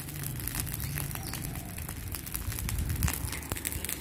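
A pile of very dry cut grass burning, crackling with many quick irregular snaps as the flames take hold, over a low steady rumble.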